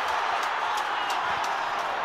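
Rugby stadium crowd cheering steadily as an attack breaks down the wing.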